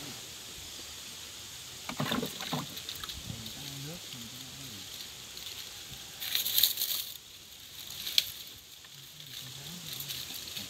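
Brush and dry palm fronds rustling in two short bursts, about two seconds in and again more loudly a little past the middle, over a steady high hiss, with low murmured voices.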